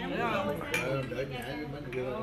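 Glass beer mugs and drinking glasses clinking together in a toast, a couple of sharp clinks over voices around the table.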